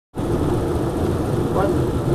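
Tour coach's engine running steadily as it travels, heard from inside the cabin as a low, even hum.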